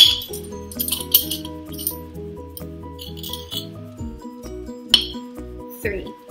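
A metal measuring spoon clinking against a glass jar as sugar is scooped out, with sharp clinks at the start, about a second in, and twice near the end, over background music of steady changing notes.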